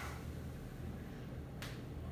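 A single sharp click about one and a half seconds in, over a steady low room hum.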